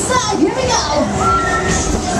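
Riders on a spinning fairground thrill ride screaming and shouting, with high held shrieks about halfway through and near the end, over loud fairground music.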